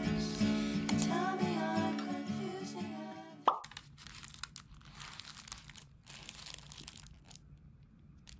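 Gentle guitar background music that stops about halfway through with a short bright pop. After it come quiet, irregular crinkles of plastic film wrappers as triangle kimbap packages are picked up and handled.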